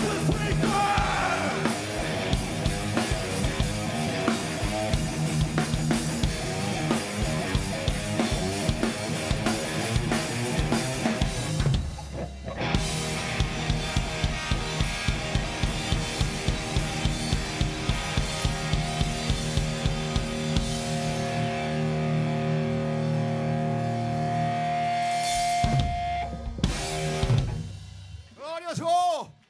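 Two-piece rock band playing live: distorted electric guitar through a Marshall amp and a drum kit. The music drops out briefly about twelve seconds in, comes back with regular drum hits under held guitar notes, and closes on a last flurry of hits near the end.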